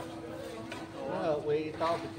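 People talking over a steady hum, with no clear sound of the knife on the whetstone standing out.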